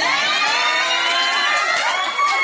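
A small group laughing and shrieking loudly all together, many high-pitched voices overlapping.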